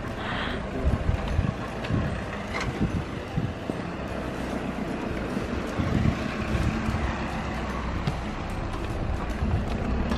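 Pram wheels rolling over asphalt, a steady low rumble with small irregular knocks.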